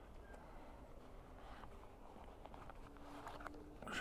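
Very quiet, faint handling sounds: a stitched pigskin leather case being opened and a small spare horseshoe lifted out of it.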